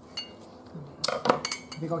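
Kitchen scissors cutting food in a serving dish and clinking against it, with a quick cluster of sharp clicks about a second in.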